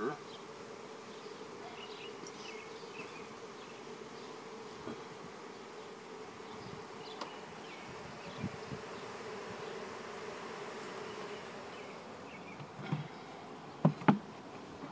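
Honeybees buzzing in a steady hum over the open frames of a hive. Near the end, a couple of sharp knocks as the hive's metal outer cover is put back on.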